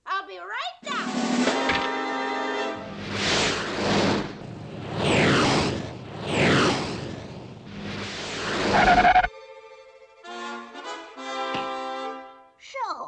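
Animated cartoon soundtrack: music with loud, noisy sound effects swelling up several times over sustained notes. The effects cut off suddenly about nine seconds in, and the music carries on with separate notes.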